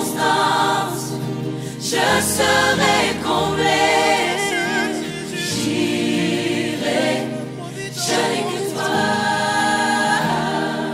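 Gospel worship music: a choir singing sustained, held notes over a bass line that changes note every second or two.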